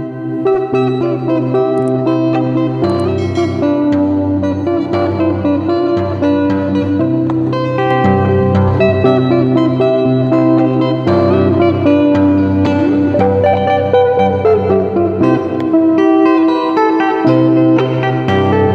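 Electric guitar played fingerstyle: a melody of plucked notes over sustained bass notes that change every couple of seconds, starting abruptly out of a brief silence.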